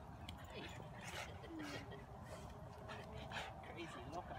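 Husky whining in several short, wavering whimpers as she jumps up in an excited greeting of her owners.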